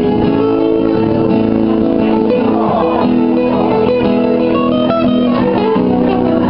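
Two acoustic guitars played live together, steady chords with single-note lines picked over them in the second half.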